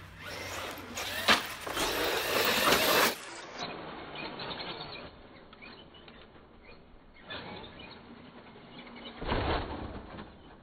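Traxxas X-Maxx 8S electric RC monster truck at full throttle: a loud rush of its brushless motor and tyres for about three seconds as it races past and launches off a jump, with a sharp crack about a second in. This is followed by a quieter stretch while it is airborne and a short rough burst near the end as it lands on dirt.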